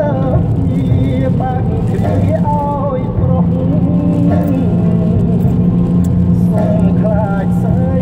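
Steady low road and engine noise inside a car driving on a wet road, with a voice over it.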